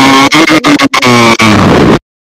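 Loud, harsh held droning tone blasted into a voice chat, distorted and near full volume, broken by a few short dropouts and sagging slightly in pitch near the end before cutting off suddenly.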